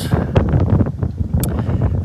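Wind buffeting the microphone outdoors, a loud, steady low rumble.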